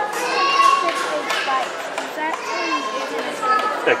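Children's high-pitched voices talking and chattering in a large room, with no clear words.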